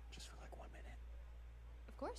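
Faint hushed dialogue, close to a whisper, from the film's soundtrack, over a low steady hum.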